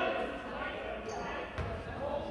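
Gymnasium game noise: crowd and player voices echoing in the hall, with a basketball bouncing on the hardwood court, the clearest bounce a little past the middle, and a brief high squeak about a second in.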